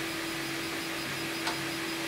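3D printer running a print: a steady hum with a brief break or two in its tone, and a faint click near the end.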